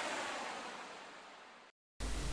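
The tail of a logo intro's music sting: a hissy, washy sound that fades steadily away, ending in dead silence shortly before the end.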